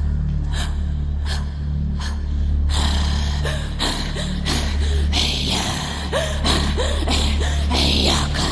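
A woman's unconventional vocal performance into a stage microphone: sharp, breathy gasp-like sounds, a few spaced strokes at first, then a rapid, dense run from about three seconds in, with short squeaky pitch glides joining later. A low steady hum runs underneath.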